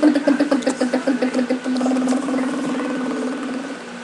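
A young child making a long buzzing, engine-like sound with her lips and voice, a rapidly pulsing drone at a steady pitch that fades near the end.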